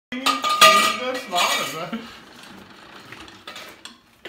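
A metal lathe cuts an aluminium pipe to length. A loud, ringing metallic screech from the cutting tool fills about the first two seconds, then quieter cutting noise follows.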